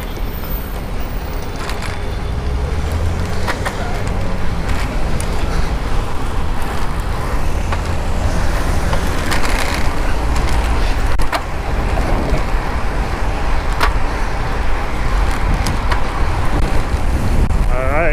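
Riding noise from a bicycle-mounted action camera: wind rumbling on the microphone over the steady noise of city traffic, with a few sharp clicks.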